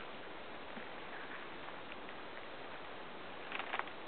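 Footsteps through dense weedy undergrowth, brushing through the plants over a steady hiss, with a short cluster of sharp crackles near the end.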